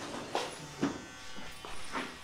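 Electric hair clipper buzzing steadily, with a few short knocks.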